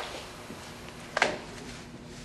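A single sharp clack about a second in, over quiet workshop background, followed by a faint steady hum.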